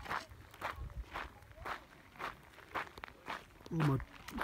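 Footsteps on dry, gravelly dirt and rock, about two steps a second, with a voice briefly near the end.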